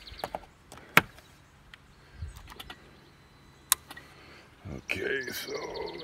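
Two sharp clicks, one about a second in and one near four seconds, against a faint low hum, with handling noise near the end.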